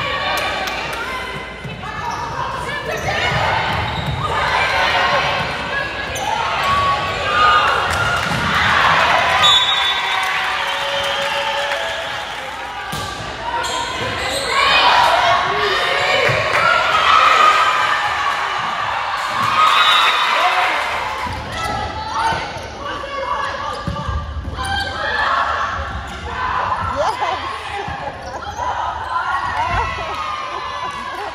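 Indoor volleyball rallies: repeated slaps of the ball being dug, set and hit, with players calling and shouting between contacts, echoing in a gymnasium.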